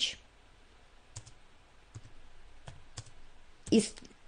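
A few faint, irregularly spaced clicks from a computer mouse, made while trying to write on an on-screen slide.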